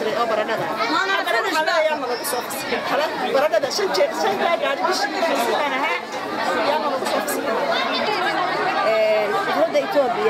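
Speech: a woman talking into an interview microphone, with other voices chattering behind her.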